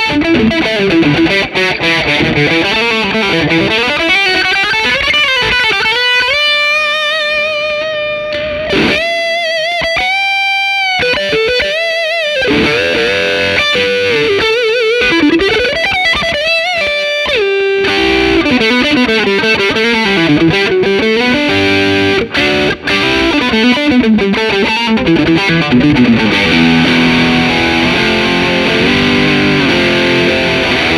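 Fender Japan Heritage 60s Telecaster Custom electric guitar played through distortion and effects: a lead line with string bends, a long held note about a third of the way in, then a wavering vibrato note, moving to lower, denser playing near the end.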